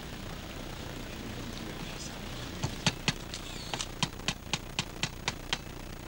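A small hammer tapping a commemorative nail into a wooden flagstaff: about a dozen light, sharp taps starting about two and a half seconds in, settling into an even rhythm of about four a second.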